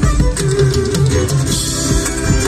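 A live folk band playing loudly through a PA, with guitars carrying the rhythm over a bass line and a melody note held through the first second.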